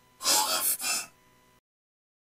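A short breathy, gasp-like vocal sound in two pulses within the first second, then it cuts off suddenly.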